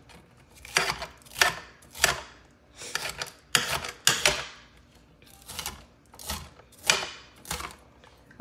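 Chef's knife chopping a green bell pepper on a hard glass cutting board: about a dozen sharp, uneven knife strikes.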